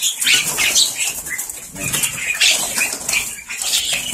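White mynas in a wire-mesh aviary flapping and fluttering their wings in short, irregular flurries.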